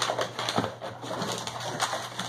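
Rummaging through a box of packaged fishing lures: crinkly packaging rustling, with a few sharp clicks and knocks as items are moved.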